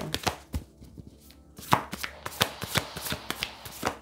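A tarot deck being shuffled by hand: an irregular run of quick card slaps and flicks, with a short lull about a second in.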